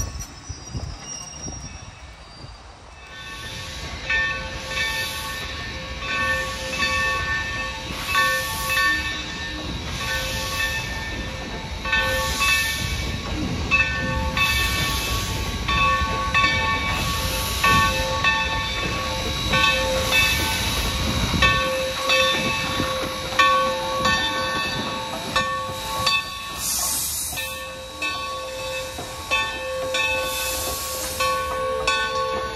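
Steam locomotive No. 3025, a 2-8-2, rolling slowly with its bell ringing in repeated strokes from about three seconds in. Steam hisses and the running gear rumbles underneath.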